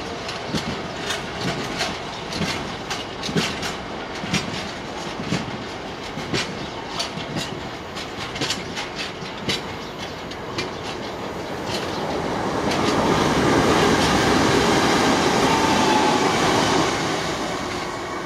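Steel wheels of a long rake of bogie cement tank wagons clicking over rail joints as a freight train rolls past, in irregular groups of sharp clicks. About two-thirds of the way through, a louder steady rushing noise swells up and then fades near the end.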